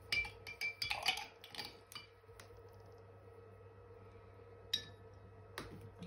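Light clinks and taps of painting tools being handled, with a quick cluster in the first two seconds and a couple more near the end, some ringing briefly like a brush against a glass water jar. A steady low hum runs underneath.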